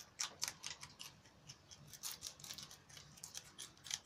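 Rabbits chewing fresh leafy green stalks: quick, irregular crisp clicks of teeth snipping and crunching the stems, several a second.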